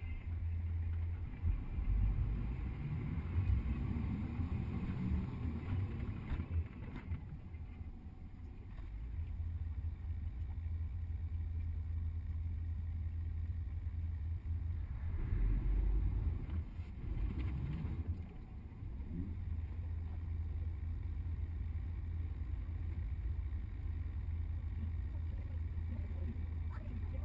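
Low, steady rumble of a double-decker tour bus on the move, heard from its upper deck, mixed with wind buffeting the microphone. It swells louder a couple of times, a few seconds in and again around the middle.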